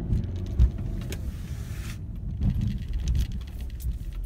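A car engine working hard under acceleration as the car speeds up a snowy, icy driveway, heard from inside the cabin. There is a sharp thump about half a second in and a few lower bumps later on.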